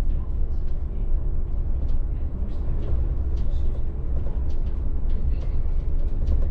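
Inside the cab of a VDL city bus on the move: a steady low rumble of the drivetrain and tyres, with light rattles and clicks scattered through it.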